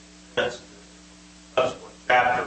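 Two short bursts of a voice speaking away from the microphone, about half a second in and again near the end, over a steady low electrical hum.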